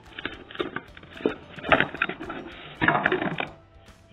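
Small cardboard box being handled and its flap opened by hand: a string of short scrapes and taps, thickest about three seconds in, with faint music underneath.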